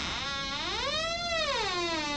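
A single sustained musical tone, rich in overtones, that glides slowly up in pitch and then back down, with an electronic, theremin-like sound.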